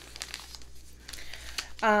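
Wrapped tea bag packets crinkling softly as they are handled, a few scattered rustles.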